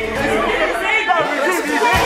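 Lively chatter of several people talking and calling out over one another.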